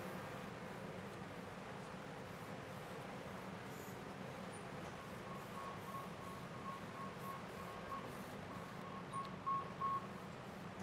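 Faint rubbing of a plastic squeegee smoothing a vinyl decal onto a flat table top, over a steady low room hum, with a few soft knocks near the end.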